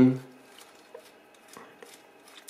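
A few faint, small clicks of plastic Lego Technic parts as the snow-groomer model's front blade is handled, over quiet room tone.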